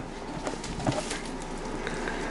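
Camera handling noise as the camera is passed between people: a faint rustle with a few light knocks.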